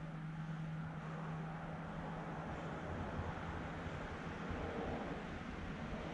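Steady background rumble and hiss with a faint low hum that fades away partway through; no distinct sound event.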